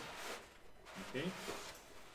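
Cardboard sliding against cardboard as an inner packing tray is drawn out of a kraft box: a brief scraping hiss lasting under a second.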